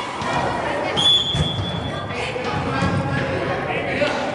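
Echoing voices and shouts in a large indoor sports hall, with a couple of dull thumps of a soccer ball being kicked or bouncing on the turf. About a second in comes a short, steady, high whistle tone.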